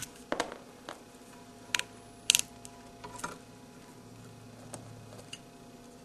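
Cable splicer scissors stripping the outer jacket off an Ethernet cable: a series of about six short, sharp snips and clicks, the loudest a little past two seconds in.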